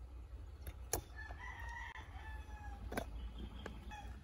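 A rooster crowing once, one long call of about a second and a half. Two sharp knocks fall around it, one just before the crow and one after.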